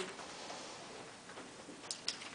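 Quiet room tone with a few faint short clicks and taps, the sharpest near the end.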